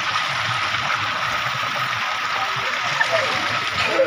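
Steady rush of water gushing from a pipe outlet into a concrete bathing tank, with people splashing in the water.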